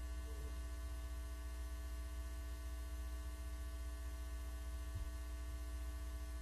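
Steady low electrical hum with faint, unchanging tones above it: mains hum on the audio feed, with no other sound.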